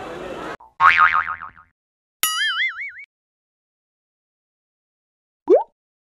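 Cartoon sound effects: a warbling wobble about a second in, then a loud springy boing with wavering pitch, and a short rising whoop near the end.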